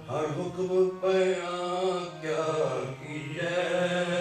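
Sikh kirtan: a hymn sung by a male voice to harmonium accompaniment. The sung line rises and falls over the harmonium's steady low drone.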